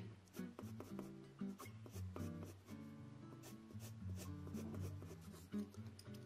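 A 2 mm mechanical pencil with 2B lead scratching on sketch-pad paper in short, quick shading strokes, about three or four a second. Soft background music plays underneath.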